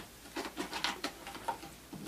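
Small craft scissors cutting through the thin plastic wall of a soda bottle: a quick series of short snips, several a second.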